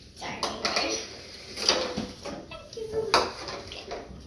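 Tableware handled on a wooden table: a small bowl and utensils clinking and knocking, about five separate knocks over a few seconds.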